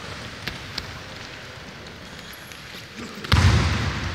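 Low hall noise of wrestling practice in a large, echoing gym, with a couple of faint clicks. Just after three seconds a sudden loud thud rings on through the hall.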